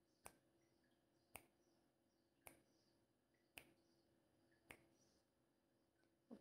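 Countdown timer ticking: five faint, sharp ticks evenly spaced about a second apart while the time to answer runs.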